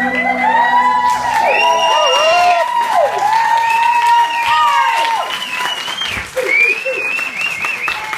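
Audience cheering, whooping and clapping at the end of a dance routine, with many overlapping high calls; the backing music fades out in the first second or so.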